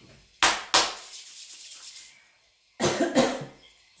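A person coughing: two sharp coughs in quick succession about half a second in, then another cough about three seconds in.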